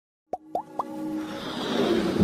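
Animated logo intro sound effects: three quick pops, each gliding upward in pitch, about a quarter second apart, followed by a rising whoosh that swells louder.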